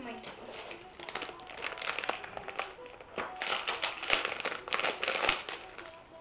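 Plastic wrapping on a pack of art canvases crinkling and crackling as it is handled and pulled out, busiest in the second half.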